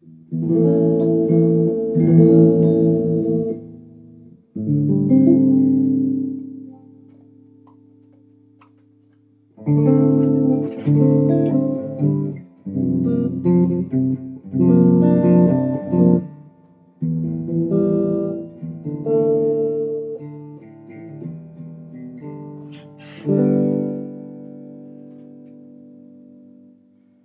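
Squier Deluxe Hot Rails Stratocaster electric guitar played through an amplifier on the clean channel: two chords struck and left to ring, then a run of shorter chords from about ten seconds in, and a last chord ringing out near the end.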